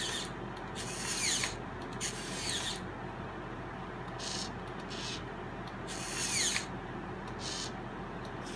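Hobby servos in a 3D-printed robotic hand whirring in about six short bursts as the fingers close and open, some bursts ending in a falling whine, over a steady low hum.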